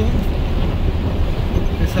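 Heavy rain falling on a moving vehicle's roof and windshield, heard inside the cab over the vehicle's steady low rumble.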